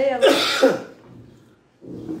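A person clearing their throat once: a short, harsh rasp about a quarter second in that dies away within half a second.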